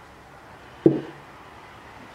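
A single dull knock of a pouring jug being set down on the table.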